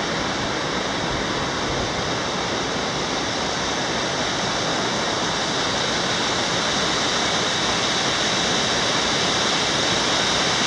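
Steady rush of a creek's water cascading over boulders, growing slightly louder near the end.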